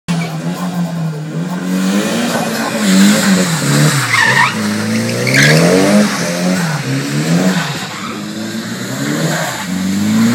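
Nissan 180SX drifting on wet tarmac: the engine revs up and down under repeated throttle blips, rising and falling about once a second, over continuous tyre noise. Two short tyre squeals come near the middle.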